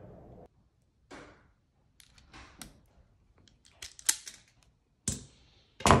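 LAOA self-adjusting wire stripper clicking and snapping as its handles are squeezed and its steel spring springs the jaws back open, stripping the insulation off a wire. A scatter of sharp clicks, loudest about four seconds in and just before the end.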